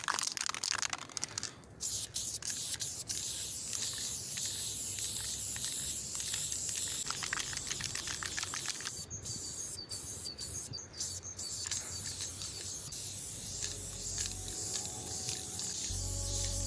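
Aerosol spray paint can: the can rattles as it is shaken at first, then a steady hiss of paint spraying onto concrete, broken into a few short bursts about nine to eleven seconds in. A music beat fades in near the end.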